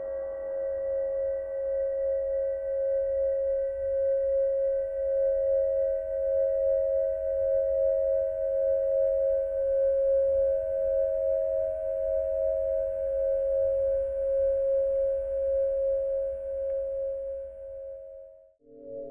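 Crystal singing bowl sounding one sustained, ringing note made of two close pitches, with a slow wavering pulse, over a faint low rumble. The note holds without fading and drops away at the very end.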